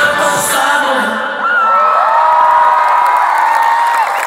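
A large festival crowd cheering and whooping as the song ends. The music stops about a second in, and long, held screams carry on over the cheering.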